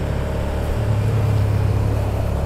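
Motor vehicle engines running at low speed in traffic, a school bus close alongside the motorcycle: a steady, low, even hum.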